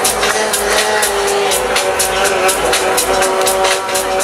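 Techno played loud over a club sound system: a steady four-on-the-floor kick about twice a second with hi-hats between the beats, under sustained synth lines.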